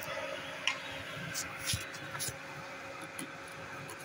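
A few light clicks and taps of a brick and an abrasive rubbing block being handled, over a low steady background hum.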